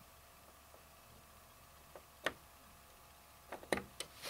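A few light clicks and taps as an Intel Core i7-3770K processor is set into the motherboard's CPU socket: one sharper click about two seconds in and a quick cluster of three near the end, over a faint steady hum.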